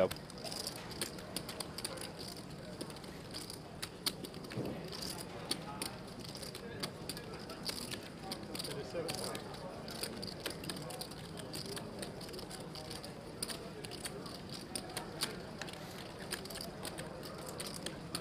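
Clay poker chips clicking irregularly as players handle and riffle their stacks at the table, over a low murmur of distant voices.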